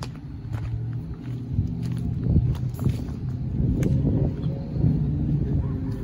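John Deere L118 riding lawn mower engine running steadily, growing louder at the start as the mower drives up close.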